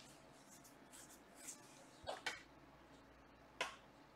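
Near-quiet room tone broken by a few brief, soft noises, the sharpest one near the end.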